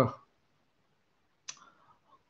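A single short, sharp click about one and a half seconds in, in an otherwise quiet pause, just after a man's voice trails off.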